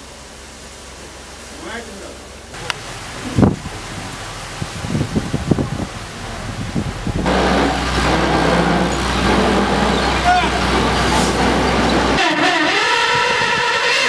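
A few metallic knocks, then a heavy vehicle engine running loudly and steadily with a deep low rumble for about five seconds.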